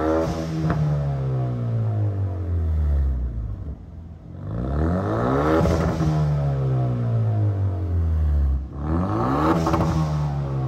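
Hyundai Veloster Turbo's 1.6-litre turbocharged four-cylinder, breathing through a custom aftermarket exhaust, revved three times while standing still. Each rev climbs quickly and then falls away slowly: near the start, about halfway through, and near the end.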